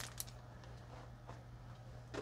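Quiet room with a steady low hum and a couple of faint clicks just after the start.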